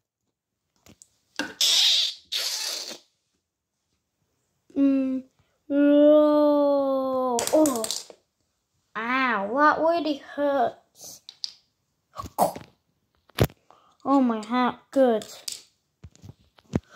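A child's voice making wordless vocal sound effects: two breathy hissing bursts early, then a long held tone, then calls that bend up and down in pitch. A couple of sharp clicks come near the end.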